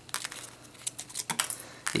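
Light clicks and rustles of the Apple EarPods' plastic case and cord being handled and pulled out of the packaging.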